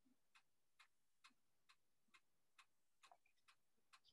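Near silence with a faint, even ticking, about two ticks a second.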